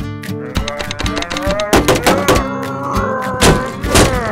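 An animated cartoon character's long, strained vocal cry, rising slowly in pitch and then wavering, over background music. Several thumps land in the middle and near the end as he bangs on a photocopier.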